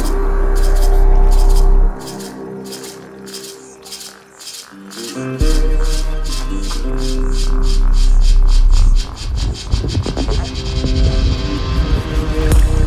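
Dark progressive psytrance track. The deep sustained bass cuts out about two seconds in and comes back a few seconds later. High noisy hits speed up steadily into a fast roll, and the bass turns into a rapid pulse near the end.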